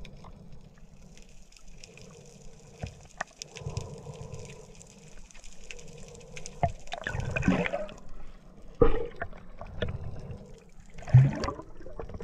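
Underwater sound as picked up by a submerged camera: a low, muffled wash with scattered faint clicks, broken in the second half by several short gushes of exhaled air bubbles.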